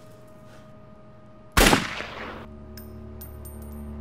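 A single handgun shot about a second and a half in, sudden and loud, dying away over about half a second, over a low sustained musical drone. A few faint high ticks follow.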